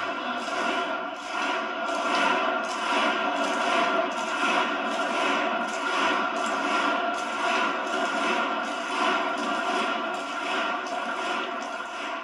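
A large hall audience applauding, the clapping falling into a steady rhythm in unison.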